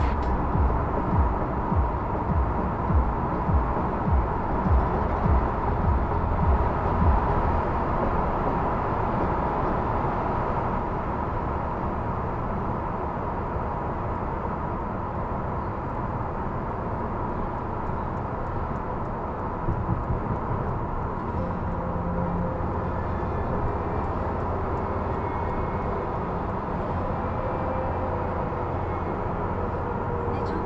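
Steady road and engine noise of a Volkswagen Passat B8 driving at speed, heard from inside the cabin. A low thumping repeats about once a second for the first seven seconds, then the noise runs on evenly.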